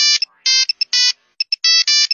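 A ringtone-style electronic melody: a quick run of short, bright notes with tiny pips between them.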